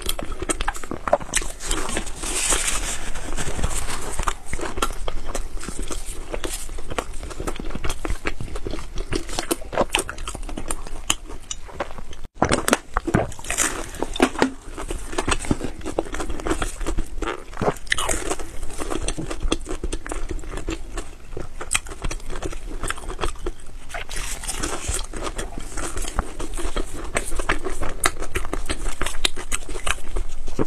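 Close-miked mouth sounds of someone biting and chewing a soft baked bun: wet, sticky chewing with dense small clicks and crackles, and a brief break a little before halfway.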